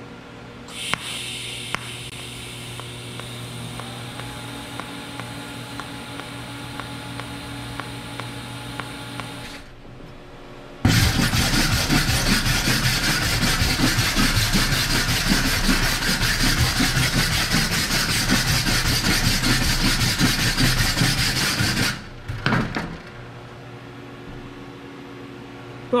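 TIG welding arc hissing steadily for about nine seconds on a stainless steel drain fitting. A second or so later, a hand wire brush scrubs hard back and forth over the fresh weld for about eleven seconds, much louder than the arc, then stops.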